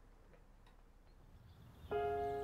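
A clock ticking faintly in a quiet room, a few ticks a second. Near the end, music starts suddenly with a plucked, ringing chord.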